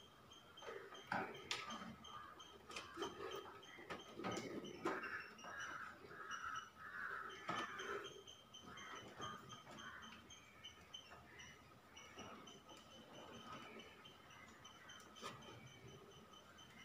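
Faint, scattered clicks and knocks of hand tools and fingers working among the circuit breakers and wiring of an open consumer unit.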